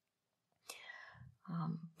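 A short pause in a woman's speech: a soft breath about a third of the way in, then her voice starting quietly near the end.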